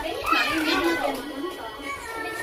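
Children's excited voices shouting and playing, loudest in the first second, with music playing underneath.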